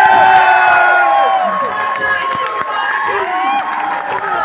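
Wrestling crowd shouting and cheering, several voices overlapping, some holding long drawn-out calls in the first second or so.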